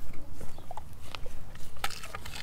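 Doberman taking a whole raw egg off a wooden cutting board with her mouth: a string of small sharp clicks and mouth noises, the sharpest near the end.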